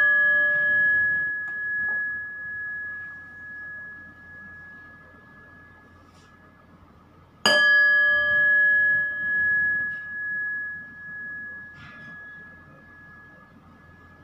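A small metal bell rings out, high and clear, with a pulsing decay. It is struck once more about seven and a half seconds in and rings down again over several seconds.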